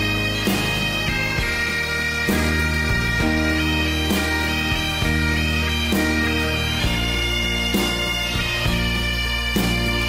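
Pipe band playing: Great Highland bagpipes sounding a steady drone under the chanter tune, with a drum stroke about every two seconds.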